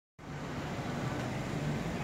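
Steady background hum of street traffic.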